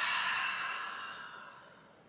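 A woman's long audible exhale, a breathy sigh that fades out over nearly two seconds.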